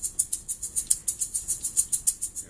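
A small pink toy maraca shaken steadily and fast, a quick even rattle of about seven shakes a second.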